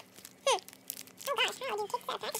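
Plastic packaging crinkling softly as a squishy toy is pulled out of its wrapper, with a short falling vocal sound about half a second in and a brief murmur of voice near the end.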